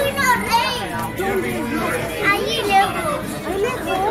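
Untranscribed voices of visitors at a zoo exhibit, with children's high-pitched voices rising above the chatter twice.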